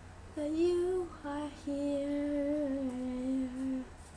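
A girl singing without accompaniment: a short phrase, then one long held note that steps down slightly near the end.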